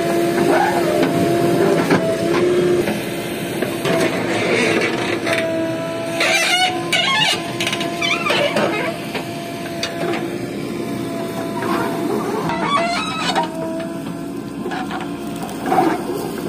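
JCB backhoe loader running while it digs and dumps soil, a steady whine from its engine and hydraulics that wavers slightly in pitch as the arm works. Two brief louder, busier sounds come through, one in the middle and one near the end.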